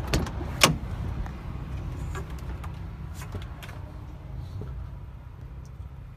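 Driver's door of a Volvo VNL semi-truck cab opening: a latch click right at the start and a sharp clack about half a second in, then a few faint knocks as someone climbs up into the cab, over a steady low rumble.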